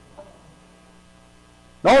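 Faint steady electrical hum in a pause between speech, with a man's voice starting again just before the end.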